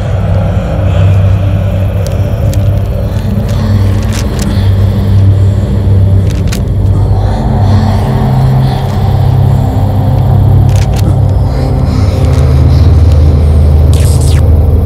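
Dark horror-film background score: a loud, deep rumbling drone whose low notes shift every second or two, with scattered sharp ticks above it.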